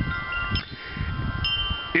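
Chimes ringing: several clear tones at different pitches start one after another and hang on. Low wind rumble on the microphone sounds underneath.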